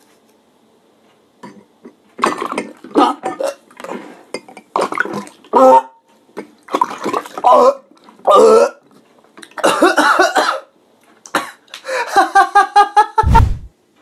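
A man coughing and spluttering through a cardboard tube in a string of short, loud bursts, ending in a rapid pulsing vocal sound and a thud just before the end.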